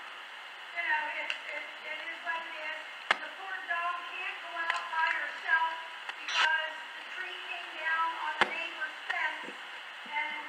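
A woman in the congregation speaking away from the microphone, her words indistinct, with a few sharp clicks or knocks, the loudest about eight and a half seconds in.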